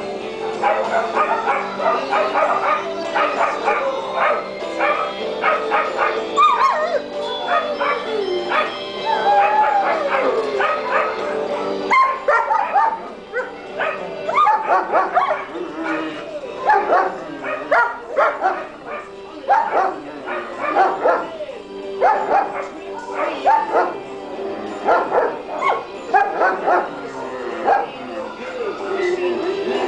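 Several dogs barking and yipping as they play, in a dense run of short calls. A few high whining calls slide down in pitch.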